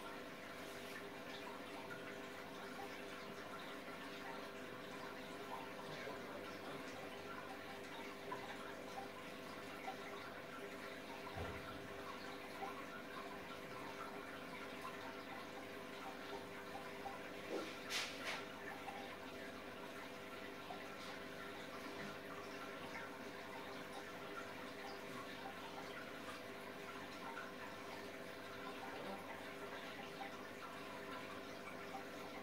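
Aquarium water trickling and dripping steadily over a faint, steady hum, with a low thump about eleven seconds in and a sharp click near eighteen seconds.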